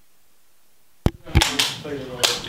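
Faint hiss, then two sharp clicks about a second in, a third of a second apart, followed by people talking.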